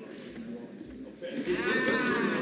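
Low murmur of voices in a large chamber. About a second in it grows louder as a nearby voice with a wavering pitch joins in, amid general chatter.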